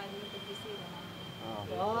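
Faint voices in a quiet pause, with a thin steady high whine. About one and a half seconds in, a voice starts speaking and grows louder.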